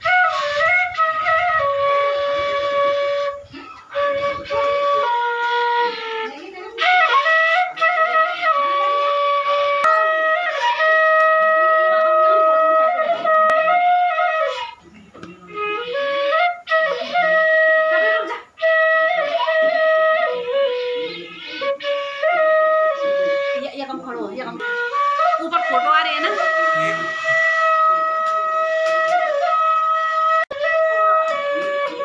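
Bansuri (side-blown bamboo flute) played solo: a slow melody of long held notes with slides between them, in several phrases broken by short breath pauses.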